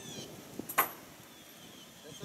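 A single brief, sharp sound a little under a second in, much louder than the faint background around it.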